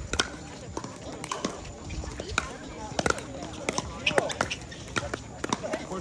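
Pickleball paddles striking the plastic ball: sharp pops at irregular spacing through a rally, with distant voices behind them.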